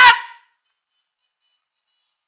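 The end of a spoken word in a high voice that rises in pitch and cuts off about half a second in, followed by dead silence.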